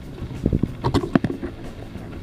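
Handling noise: a quick run of light knocks and clicks between about half a second and a second and a half in, over a steady low hum.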